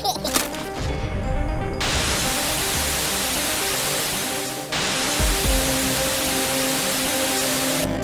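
Cartoon rocket-thruster sound effect: a steady hissing rush of noise that starts about two seconds in, breaks off for a moment near the middle and resumes, over background music.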